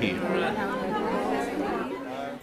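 Indistinct chatter of several people talking at once, a low murmur of overlapping voices.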